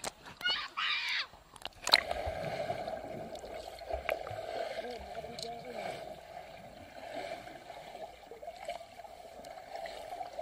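Voices above the water for about the first second, then a sharp splash near two seconds as the camera goes under the pool surface. After that, a steady, muffled underwater noise of swimming-pool water heard through the submerged camera.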